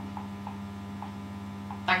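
Steady electrical mains hum, with a few faint, very short blips scattered through it.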